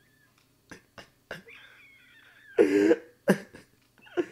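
Short cough-like bursts of a person's voice: a loud one about two and a half seconds in and a shorter one just after, preceded by a few faint clicks.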